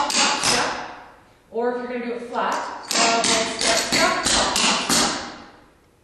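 Clogging shoe taps striking a hardwood floor in quick runs as the steps of a single Burton are danced. One run fades out about a second in, a short spoken phrase follows, and a second, longer run of taps comes about three seconds in.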